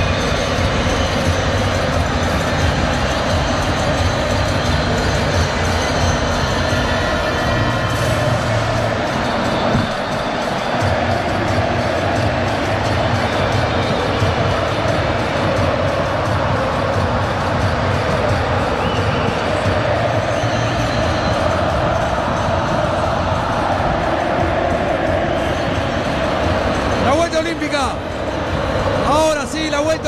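Music with a steady beat from the stadium sound system, heard over a crowd through a radio broadcast's pitch-side microphones; a voice comes in near the end.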